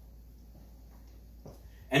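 Faint room tone with a steady low hum during a pause in talk, then a man's voice starting near the end.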